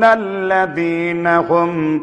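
A man's voice reciting the Quran in Arabic in melodic chant, holding long notes that step down in pitch about two-thirds of a second in.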